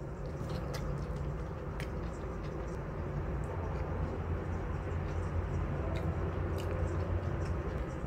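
A steady low room hum, with a few faint soft clicks of someone chewing a mouthful of noodles.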